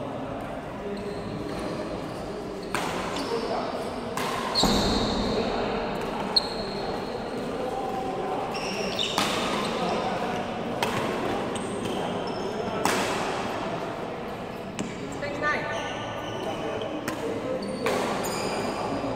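Badminton rally in an echoing sports hall: rackets strike a shuttlecock in sharp, irregular hits a second or two apart, with short high squeaks of shoes on the court floor. Voices chatter in the background.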